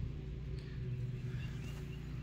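Steady low background hum with no distinct event.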